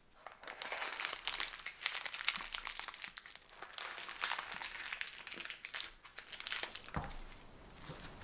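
Parchment baking paper crinkling and rustling as it is wrapped tightly around a rolled sponge cake and its ends are twisted shut. A single thump near the end.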